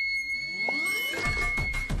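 A very high sung note, held steady without wavering, that stops near the end. Under it a rising electronic sweep leads into a music beat that comes in about a second in.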